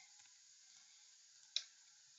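Near silence broken by a single short computer mouse click about one and a half seconds in.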